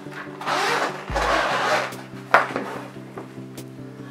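Zipper of a violin case being pulled open, two long rasping strokes in the first two seconds, then a sharp click as the case is opened, over steady background music.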